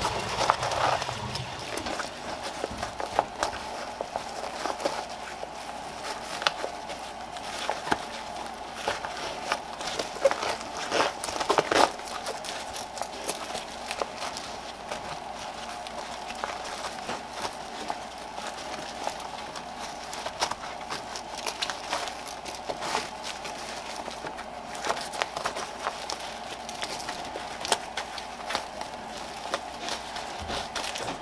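Nylon webbing and fabric rustling and scraping as a magazine pouch's MOLLE straps are woven under the loops of a vest cover, with irregular small clicks and scuffs. There is a denser patch of handling noise about 11 to 12 seconds in.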